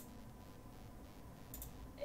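Quiet room tone with a single computer mouse click about one and a half seconds in.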